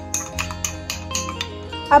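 Background music with held notes and a steady, evenly spaced beat.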